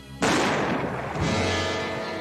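A single gunshot about a quarter second in, sharp and loud, ringing out with a long echoing tail over sustained dramatic background music.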